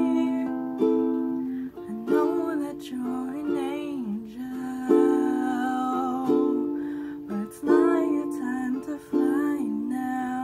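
A woman singing softly over chords strummed on a small plucked string instrument, each chord struck about every second and a half and ringing away.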